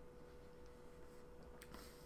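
Near silence: room tone with a faint steady hum, and a faint click near the end.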